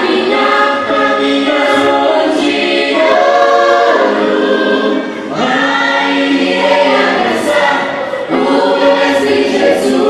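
Children's choir singing in several voices, in held phrases broken by brief pauses about three, five and eight seconds in.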